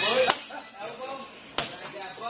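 Two sharp smacks of boxing-glove punches landing on hand-held focus mitts, a little over a second apart.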